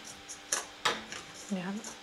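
Two sharp clicks about a third of a second apart, as a pair of scissors is handled and set down on a tabletop.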